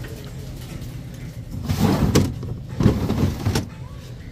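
Items rummaged and scraped about in a plastic store bin, in two short noisy bursts about a second apart, over a low steady rumble.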